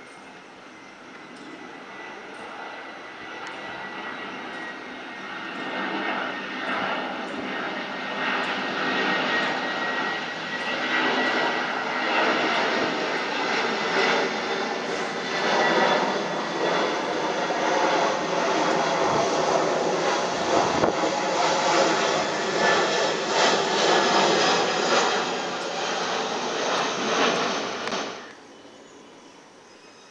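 The two CFM56 turbofan engines of an Airbus A319 jet airliner on approach, passing low overhead with its gear down. The jet noise swells over about twelve seconds to a loud, steady rush, with a faint high whine under it at first, and cuts off suddenly at the end.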